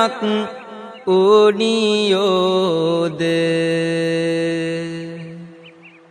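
A Buddhist monk's voice chanting Sinhala kavi bana verse in a melodic, wavering line. It breaks off briefly about a second in, then holds one long note that slowly fades away near the end.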